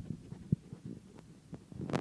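A few soft, low thumps, the clearest about half a second in, over a faint low hum.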